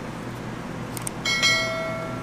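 Notification-style bell chime sound effect from a subscribe-button animation: a faint click, then a bright bell ding a little over a second in, struck twice in quick succession and fading slowly, over a steady low hum.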